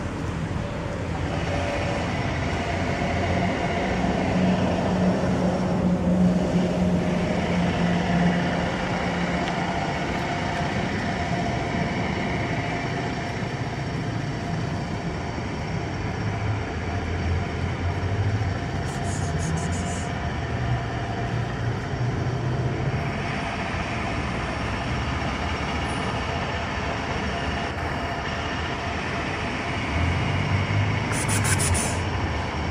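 A steady, loud rumble of a passing vehicle or vehicles, with a low engine-like hum that shifts slowly in pitch.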